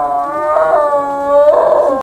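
Snow leopard calling: one long, held cry that turns harsher and louder about one and a half seconds in.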